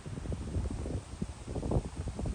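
Wind buffeting the microphone: an uneven low rumble broken by short thumps.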